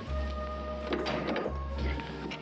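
Shoeshine brush scrubbing and buffing a leather shoe, with background music.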